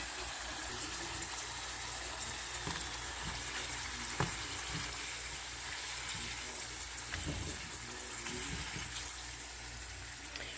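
Japanese sweet potato (camote) slices sizzling in shallow oil in a nonstick frying pan, a steady hiss throughout. There is a sharp click at the very start and a lighter one about four seconds in.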